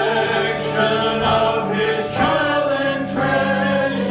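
A small worship team of men and women singing a hymn-like worship song together in sustained phrases, accompanied by electric guitar.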